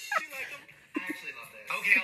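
People laughing in short, falling bursts, then after a brief lull, voices talking with another laugh and an "okay" near the end.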